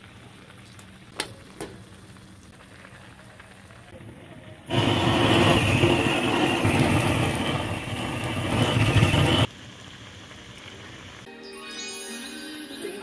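Handheld gas blowtorch firing its flame into a pot of ramen: a loud, steady roaring hiss that starts suddenly about five seconds in and cuts off suddenly about five seconds later.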